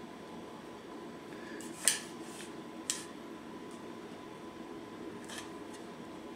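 Handling of a tape measure against a tape-wrapped metal tumbler: a few short clicks and soft rubbing over faint room tone, with sharper clicks about two and three seconds in.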